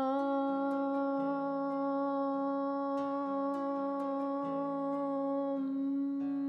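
A woman's voice chanting a long, steady "Om" at one held pitch on a single exhaled breath, as a yoga breathing exercise. Near the end the open vowel closes into a hummed "mm".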